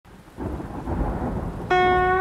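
Rain and rumbling thunder, used as an ambient intro to a beat. Near the end a sustained pitched instrument note comes in sharply and louder.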